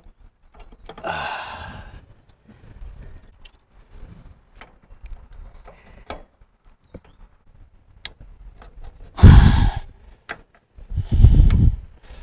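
A man sighing and breathing out hard as he strains with both hands inside an open rear axle differential, with faint metal clicks from the parts in between. Two loud, rough exhales come near the end.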